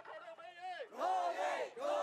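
A marching crowd chanting slogans in unison. Short repeated chanted phrases give way to two louder drawn-out shouts, the first about a second in and the second near the end.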